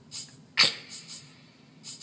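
Electronic keyboard sounding short, sharp drum-like hits, about five in quick succession, the loudest about half a second in.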